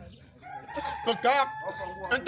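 A rooster crowing once: one long call that rises and then holds a steady pitch for over a second, with a man's voice briefly over it.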